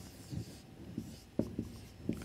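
Marker pen writing on a whiteboard: a run of short, faint strokes and taps of the tip as letters are formed.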